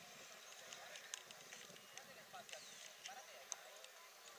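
Faint, distant voices across an open football pitch, with scattered light clicks and one sharper click about three and a half seconds in.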